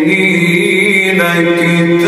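A male qari reciting the Quran in melodic tajweed chant, holding one long drawn-out note whose tone shifts about a second in.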